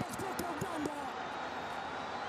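A man's voice calling out in short rising-and-falling shouts, like excited match commentary, over steady stadium crowd noise.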